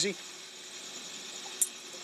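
Steady low background hum with faint high tones, and one light click about one and a half seconds in as a tin-can metal sleeve and a hose clamp are handled over an exhaust pipe.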